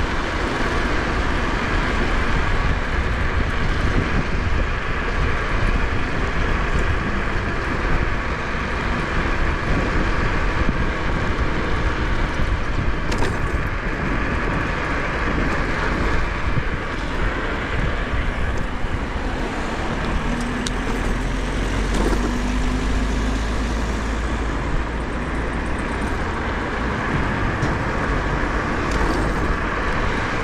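Steady wind rush and deep rumble from riding an Ecoxtrem Bison 800 W electric scooter along a paved road, with road traffic mixed in. A faint rising whine comes in about two-thirds of the way through.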